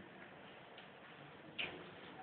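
Near-silent room tone with a single faint, short tick about a second and a half in.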